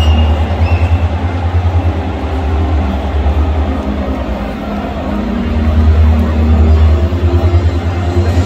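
Loud, deep, pulsing rumble of stadium atmosphere from the stands. It swells near the start and again about six seconds in.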